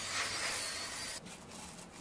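Oil sizzling softly under chive pockets pan-frying in a flat pan, a steady hiss that cuts off suddenly a little past halfway.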